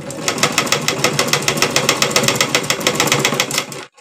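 Domestic sewing machine stitching a narrow folded hem along a sleeve edge. It runs at a steady pace of about eight stitches a second, a rapid even clatter, and stops suddenly near the end.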